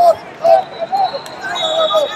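Shouting voices of coaches and spectators echoing in a large arena, with a thud of bodies hitting the wrestling mat at the start. A thin, steady high tone runs through most of the second half.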